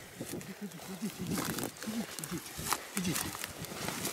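Low, murmured voices talking quietly, with the swish of footsteps through tall grass.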